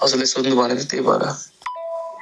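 A man's voice playing through a smartphone's speaker, then about one and a half seconds in a click and a short electronic two-note chime from the phone, a higher and a lower tone sounding together for under a second.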